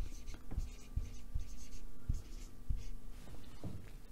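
Marker pen writing on a whiteboard: a run of short, faint scratching strokes with a few light taps.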